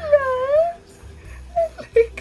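Small dog whining in an excited greeting: one long whine that dips in pitch and rises again, lasting about a second, followed by a couple of short sounds near the end.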